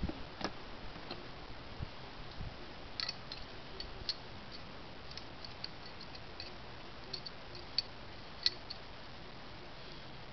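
Pistol cartridges being pressed one by one into a magazine: a run of small, irregular metallic clicks, the loudest two near the end. A single knock comes about half a second in.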